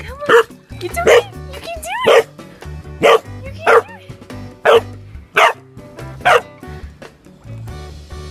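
English bullmastiff puppy barking repeatedly, about eight short barks roughly a second apart, over steady background music.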